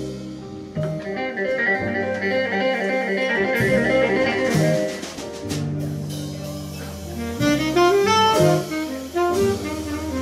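Live band playing an instrumental passage: saxophone over guitars, double bass, keyboard and drums, with a quick rising run of notes about seven and a half seconds in.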